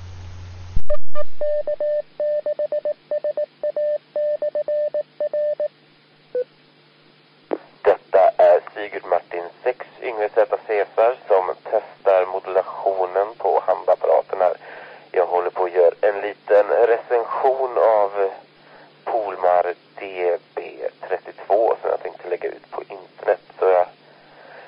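Audio recorded from a local amateur radio repeater. After a click, a tone keyed on and off in short and long pulses runs for about four seconds. Then a man speaks Swedish through a narrow, radio-sounding FM channel: a transmission from a Polmar DB-32 dual-band handheld whose modulation the owner finds a bit weak.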